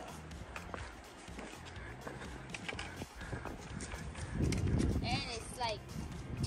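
Trekking pole tips clicking and boots scuffing on granite rock as a hiker walks downhill, irregular sharp knocks throughout. About four seconds in a loud low rumble of noise on the microphone sets in for over a second, and a few short chirps sound near the end.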